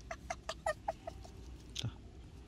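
Newborn puppy squeaking: a quick run of short, high peeps in the first second, then one more near the end.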